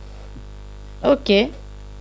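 Steady low electrical mains hum under the recording, with one short spoken word about a second in.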